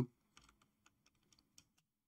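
Faint computer keyboard keystrokes: a handful of light, irregular taps as a word is typed.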